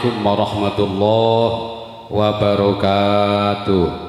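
A man's voice chanting through a microphone and PA in long, level-pitched held notes: two sustained phrases with a short break about two seconds in, stopping just before the end.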